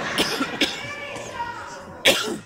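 Indistinct talking, with two short coughs about a quarter and half a second in.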